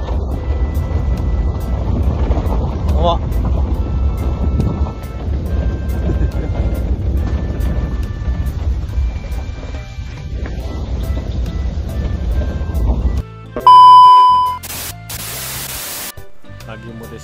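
Vehicle driving over a rough dirt road, with a heavy low rumble of engine and road noise. About 13 seconds in the rumble cuts off. A loud, steady beep tone follows for about a second, then a short burst of loud hiss.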